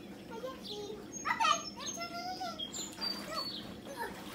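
A child's voice calling out without clear words about a second in and again shortly after, with thin high chirps in the background.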